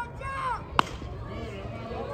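A single sharp crack of a baseball bat hitting a pitched ball, a little under a second in, just after a brief shout.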